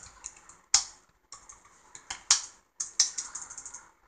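Computer keyboard typing: irregular keystrokes with a few louder key strikes, as a short terminal command is typed and Enter is pressed several times.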